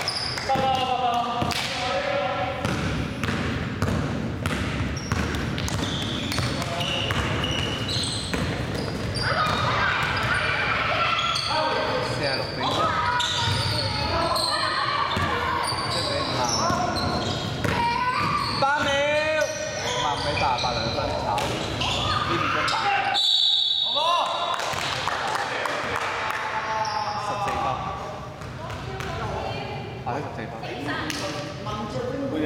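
Basketball game on a hardwood gym floor: a ball bouncing in repeated sharp knocks, with players calling and shouting to each other in a large hall.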